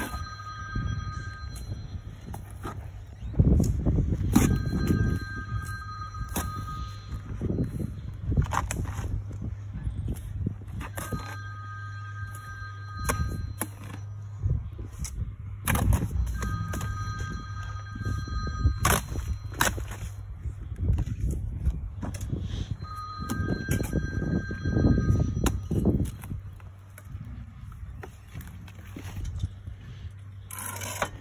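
A phone rings again and again, a two-tone electronic ring coming back every five to six seconds. Under it, a steel brick trowel scrapes and slaps mortar and clinks against bricks as a mortar bed is spread and bricks are laid.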